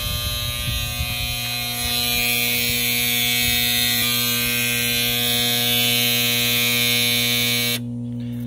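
Whitewater DF Series aerobic septic system alarm buzzing steadily, cut off suddenly near the end when its silence button is pressed. The alarm signals that the septic water is not getting pumped out, here because the pump timer has burnt out.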